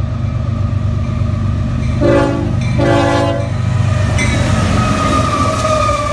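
CSX freight train's diesel locomotives approaching and running past with a steady low rumble, sounding two short horn blasts about two seconds in. After the horn a steady whine rises over the rumble and sags slightly in pitch as the locomotives go by.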